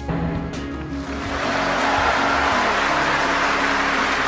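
Audience applause, many hands clapping, swelling up about a second in and then holding steady, over background music.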